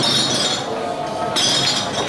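Pool balls clacking as the cue ball is struck into the pack, with a second sharp clack about one and a half seconds in.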